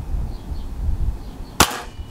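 Anschütz Hakim spring-piston air rifle firing a single shot about one and a half seconds in: one sharp crack with a short ring after it.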